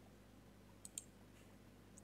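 Near silence: room tone, with two faint short clicks close together about a second in.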